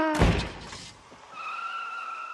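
A loud bang just after the start, then a car's tires squealing in a steady high screech as it speeds away.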